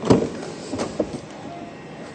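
Driver's door of a Volvo V50 wagon being opened: a loud clunk of the latch releasing right at the start, followed by a couple of lighter clicks as the door swings open.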